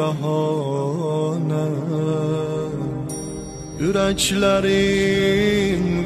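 Azerbaijani devotional song to the Hidden Imam: a singer holds long, ornamented notes in a chant-like line. The voice drops away briefly about three seconds in, then a new phrase begins with a rising glide about four seconds in.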